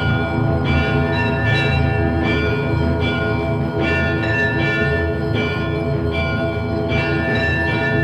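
Bells ringing, a steady run of struck notes about two a second that ring on and overlap, over a sustained low drone.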